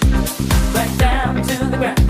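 Soulful funky house music playing in a DJ mix: a steady four-on-the-floor kick drum at about two beats a second under a bass line, with a wavering melodic line coming in about halfway through.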